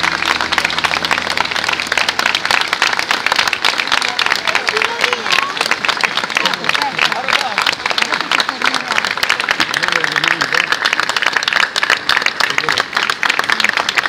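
Audience applauding, dense steady clapping with scattered voices calling out. The last held notes of the backing music die away in the first second or so.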